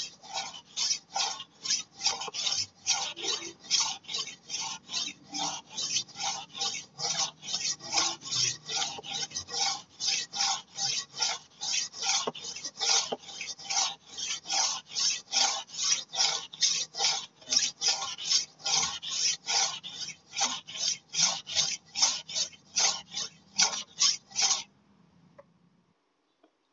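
Steel golok (machete) blade stroked back and forth on the red, finer-grit side of a Cap Panda whetstone, a rhythmic scrape of about two strokes a second that stops near the end. This is the honing stage on the fine grit, which gives a smoother scrape than the coarse side used to flatten the bevel.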